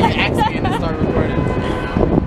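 A man and a woman talking and laughing over the steady rumble of city street traffic.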